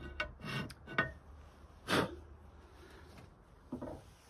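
Bastard file rasping on the edge of a negative carrier's opening: a few short strokes in the first two seconds, the loudest about two seconds in, then a pause and one lighter stroke near the end.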